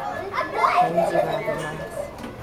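Background voices of people, including children, talking and playing in a busy public space, with no single clear speaker.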